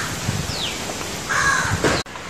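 A crow cawing, one harsh call near the end, over outdoor background noise.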